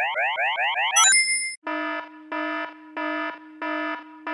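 Video intro sound effects: a run of quick rising cartoon chirps, about four a second, ending in a bright ding about a second in, then a buzzy alarm beep that repeats about every two-thirds of a second.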